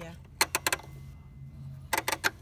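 Sharp plastic clicks from hands on the Baby Lock Imagine serger's controls: a quick cluster of about four clicks half a second in, and a few more near the end.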